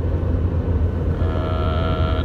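Steady low rumble of road and engine noise inside a moving car's cabin. A little over a second in, a held pitched note joins it and carries on to the end.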